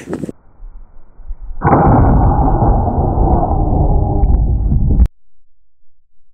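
A 12-gauge shotgun slug shot hitting the target, played back slowed down: a deep, muffled, drawn-out rumble that starts suddenly, lasts about three and a half seconds and cuts off abruptly.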